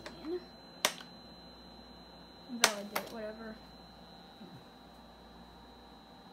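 A few separate key presses on the Compaq Deskpro 286's keyboard, sharp clicks with the loudest about two and a half seconds in, followed by a brief murmur of voice. A faint steady high-pitched whine runs underneath.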